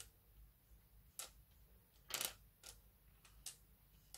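Faint clicks of small plastic cubes knocking together and against the board as a hand slides pink ones aside, about four light clicks spread out, the loudest roughly halfway through.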